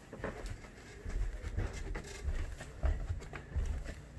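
Footsteps going down a flight of stairs: a series of dull low thuds about every half second to second, with faint handling noise from the camera.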